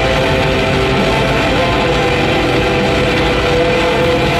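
Black metal band playing live and loud: distorted electric guitar over drums, with held guitar notes ringing through the dense wall of sound.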